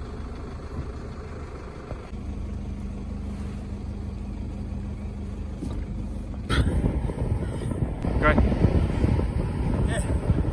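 Car engine and road noise heard from inside a slowly moving vehicle, with a steady low hum for a few seconds. About six and a half seconds in, it gives way to louder rumbling wind on the microphone, with a brief voice near the end.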